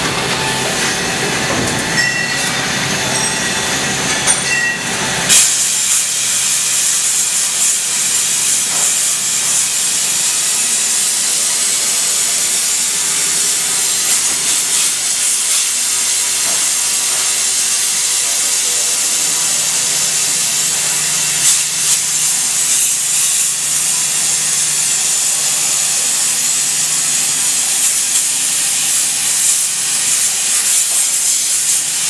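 Okuma Howa 2SP-35H twin-spindle CNC lathe running its cycle behind the enclosure window, with a steady spraying hiss that starts suddenly about five seconds in; a low hum comes in about two-thirds of the way through.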